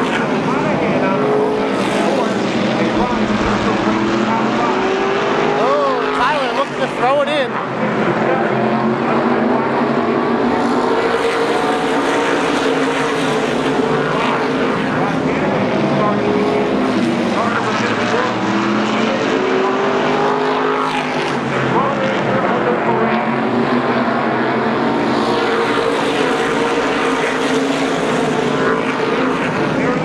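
A pack of SK Modified race cars running together at speed, many small-block V8 engines overlapping and rising and falling in pitch as the field passes through the turn.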